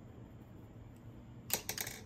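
Quiet room tone, then a quick run of light clicks and taps about one and a half seconds in, from a paintbrush being handled at the easel.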